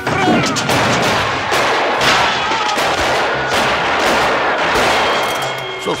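Sound-effect gunfire: a dense, continuous barrage of rapid shots, many sharp cracks over a thick haze of noise.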